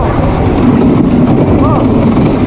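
Ghostrider wooden roller coaster train running along the track at speed, a loud steady rumble. Short rising-and-falling whoops from riders cut through it at the start and again near the end.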